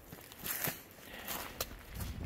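Footsteps through dry grass and brush, with a couple of short sharp clicks.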